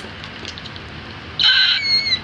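A short, high-pitched squeal of laughter from a man's voice about a second and a half in, gliding slightly in pitch, after a stretch of low room hiss.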